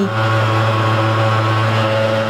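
Portable motorized fogging sprayer running with a steady low hum.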